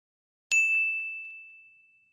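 A single bright bell-like 'ding' sound effect, struck about half a second in and ringing down over about a second and a half. It is the chime for a subscribe button's notification bell being switched on.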